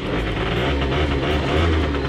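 Scooter engine, running with its battery removed, starting easily and settling into a steady idle to warm up.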